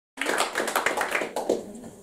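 Small audience applauding, a quick patter of hand claps that dies away after about a second and a half.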